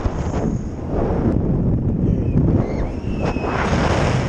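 Wind rushing and buffeting over the microphone of a camera carried on a swinging fairground ride, a steady loud roar-like rumble.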